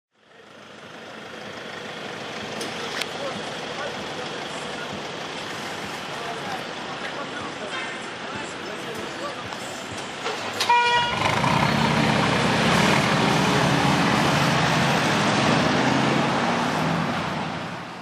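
Street noise with voices, then a short car-horn toot about eleven seconds in, followed at once by a loud car engine and exhaust that holds steady for about six seconds before fading out.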